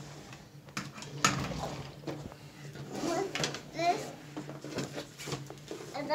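A few sharp knocks and clicks of a small wooden treasure chest being set down and handled on a wooden table, with short voice sounds from a child in between.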